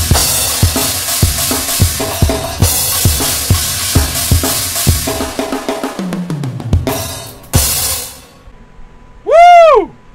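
Pitch-shifted Aerodrums virtual drum kit played with sticks: a steady beat of bass drum, snare and cymbals, with a falling fill around six seconds in and a final crash about eight seconds in. Near the end, a short loud tone rises and falls.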